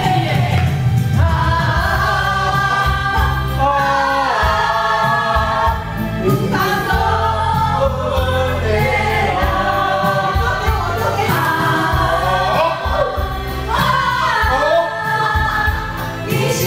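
Karaoke song playing loudly with a steady bass beat, several voices singing along into microphones.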